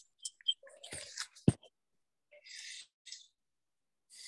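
Handling noise from a participant's open microphone on a video call: a few small clicks and short high chirps, a sharp knock about a second and a half in, then two short bursts of hiss.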